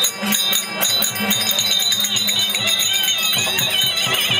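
Therukoothu ensemble music: a harmonium holding steady notes over a quick, even drum beat with jingling percussion, and a wavering high melody line joining about halfway through.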